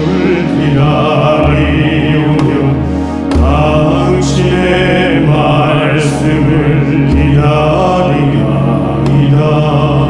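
Slow, chant-like music from a small ensemble of Korean traditional instruments and keyboard, accompanying a chanted Catholic prayer for the dead (yeondo). A melody slides in pitch over a steady low drone, with a brief dip a little after three seconds in.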